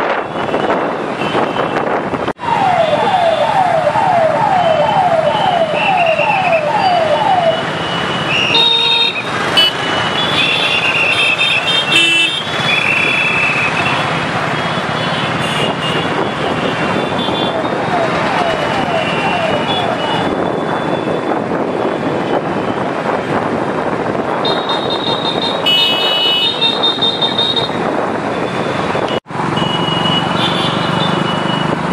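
A large group of motorcycles running together in a slow convoy, a steady mass of engine and road noise. Horns toot repeatedly over it. A siren-like electronic tone falls in pitch about twice a second for several seconds early on, and comes back fainter later.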